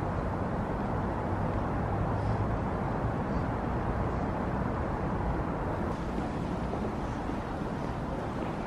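Steady low rumble of background noise with no distinct events.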